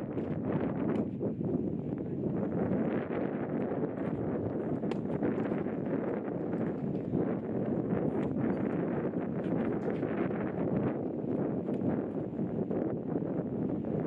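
Wind buffeting the microphone in a steady rumbling rush, with a few faint sharp knocks of tennis balls being struck and bouncing on the clay court.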